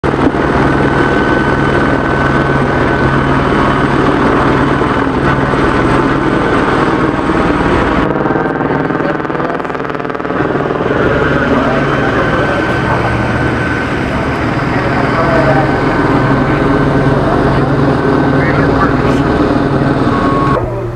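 Helicopter hovering overhead: a steady, loud rotor and engine drone, with indistinct voices under it. The sound changes abruptly about eight seconds in.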